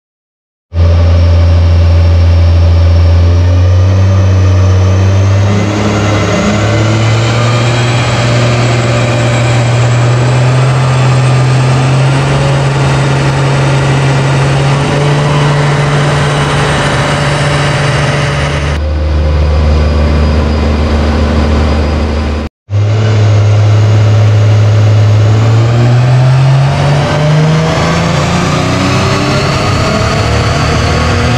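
Nissan Cefiro A31's engine pulling under load on a chassis dynamometer, its pitch climbing slowly and steadily through a long run of about 18 seconds before dropping back. After a brief break a second pull starts and climbs again.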